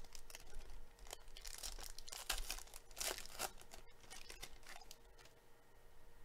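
Foil wrapper of a 2017 Donruss NASCAR hobby pack being torn open and crinkled by hand. A run of crackling tears is loudest in the middle and thins out near the end.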